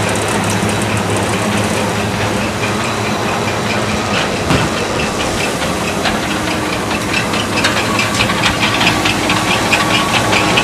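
Convey-All TC1020 portable belt conveyor running on its three-phase electric motor: a steady mechanical hum with the rush of the moving belt. About halfway through, a rapid ticking comes in and grows denser toward the end.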